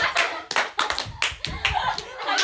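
Several young women clapping their hands irregularly and excitedly, over excited voices.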